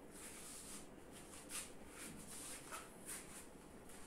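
Faint handling noise from steel hand grippers being gripped and squeezed: short scraping, rubbing bursts, with one brief squeak a little before three seconds in.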